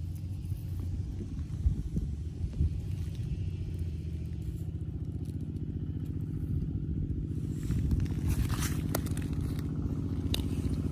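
A small engine running steadily at low revs, a constant low drone that grows a little louder near the end, with a few light scrapes and clicks over it.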